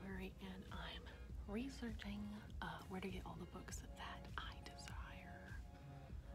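A woman whispering close to the microphone.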